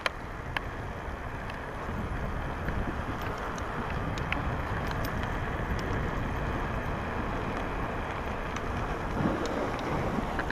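Wind rushing over the microphone of a moving bicycle, with a steady low rumble from riding on a paved path and a few light clicks and rattles.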